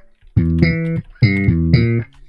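Sampled slap bass guitar from FL Studio's FLEX plugin, its 5-string New Rock Slap preset, playing a few sustained notes, with a short break about a second in.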